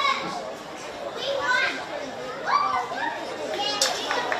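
Footballers' shouts and calls carrying across an open pitch during play, several short cries in a row, with a single sharp knock just before the end.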